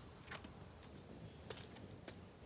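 Near silence: quiet outdoor background with a couple of faint clicks, the clearest about one and a half seconds in.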